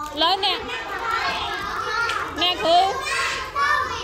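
Young children's voices chattering and calling out, several at once.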